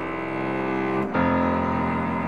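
Live cello and piano duet in a classical style: the cello sustains long bowed notes over piano chords, shifting to a new, louder note about a second in.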